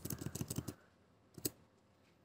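Computer keyboard keystrokes, a quick run of about eight faint clicks, then one more keystroke about a second and a half in.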